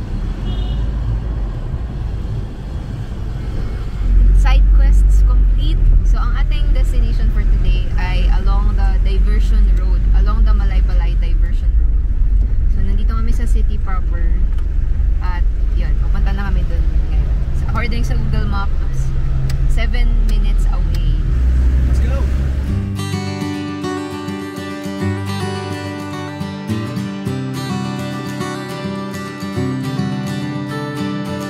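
Steady low rumble of a Mitsubishi Delica Star Wagon camper van on the move, heard from inside the cabin, with voices talking over it. About two-thirds of the way through, the road noise cuts out and strummed acoustic guitar music takes over.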